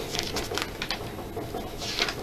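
Paper rustling and light crinkles from stickers being handled over a Panini sticker album, then a louder swish near the end as a page of the album is turned.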